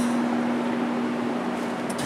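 Steady background machine hum: one constant droning tone over an even noise, easing slightly toward the end.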